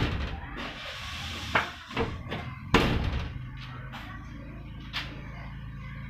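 A car's rear tailgate being tried after an adjustment: latch clicks and knocks, with the loudest clunk, the door shutting, about three seconds in. The fit is still not right; the latch side needs moving further in.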